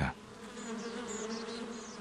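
Honeybee buzzing, a steady hum, laid in as a sound effect.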